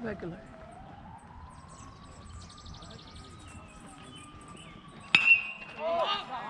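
A baseball bat hits a pitch about five seconds in, one sharp crack with a short ringing ping after it; the ball is popped up.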